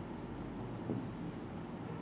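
A pen writing a short word on a board: a few brief, faint scratches of the tip on the surface.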